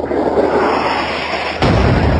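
Explosion sound effect, an air strike hitting: a dense blast of noise, then a sudden heavy low boom about one and a half seconds in.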